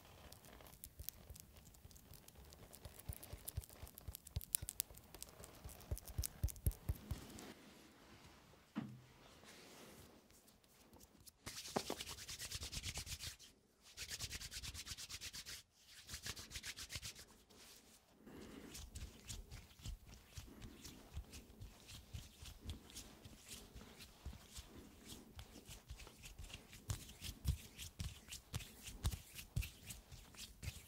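Hands rubbing hair pomade between the palms and working it close to the microphone: a steady stream of sticky, crackling rubbing, with two louder spells of brisk palm rubbing about midway.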